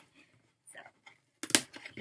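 A cardboard box being handled and opened: a few faint scrapes, then one sharp click about one and a half seconds in.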